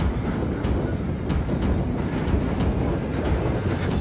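Heavy military truck driving past close by on gravel, its engine and tyres running steadily, with an even beat of short strokes over it.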